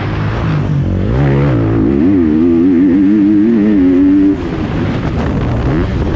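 GasGas 250 motocross bike's engine revving while being ridden around a dirt track, its pitch rising and falling with the throttle, over wind noise. The engine note drops suddenly a little after four seconds in.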